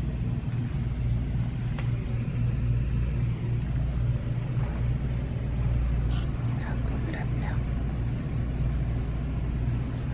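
A steady low rumble runs throughout, with faint voices in the background about six to seven seconds in.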